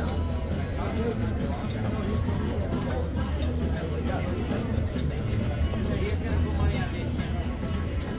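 Casino ambience: background music and a murmur of distant voices over a steady low hum, with scattered light clicks from chips and cards on the table.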